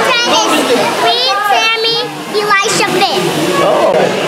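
Children's voices talking and calling out in high, excited tones, with a short pause about halfway through.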